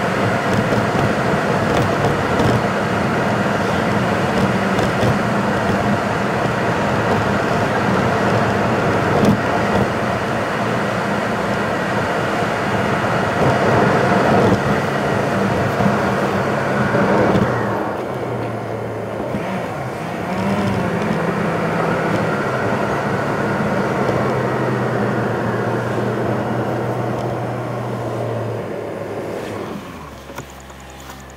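Car driving along a road: a steady engine drone under tyre and road noise. The road hiss drops away about two-thirds of the way through as the car slows, and the whole sound fades as it draws to a stop near the end.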